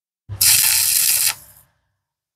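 Stick-welding (SMAW) arc burning on steel angle iron to lay a single tack weld. It is a loud, dense hiss with a low hum beneath that starts abruptly, runs for about a second and cuts off with a brief fading tail.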